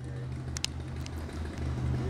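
Low, steady drone of a distant airboat's engine and propeller, with a couple of faint clicks about half a second in.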